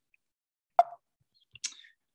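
A single short pop, like a lip smack, a little under a second in, then a faint intake of breath near the end, during a pause in a talk heard through a noise-gated video call.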